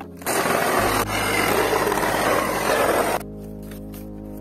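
Cordless reciprocating saw cutting through a weathered wooden board. It starts up again about a third of a second in after a brief pause, runs loud and steady, and stops a little after three seconds.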